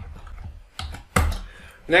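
A few keystrokes on a computer keyboard, the loudest a little past the middle, as a save-and-quit command is typed in the vi editor.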